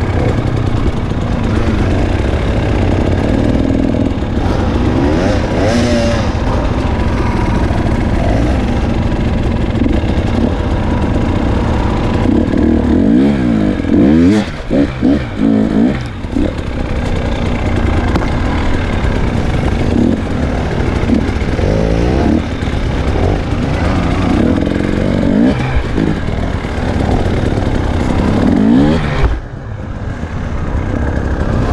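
Enduro dirt bike engine under way on a forest trail, revving up and down as the throttle is opened and closed. About halfway through the throttle is blipped in quick, choppy bursts.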